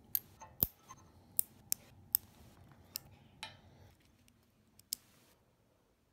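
Nail clippers clipping fingernails: a series of sharp, irregular clicks, about eight in five seconds, then quiet near the end.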